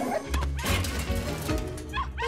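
Cartoon puppies yipping and barking over background music.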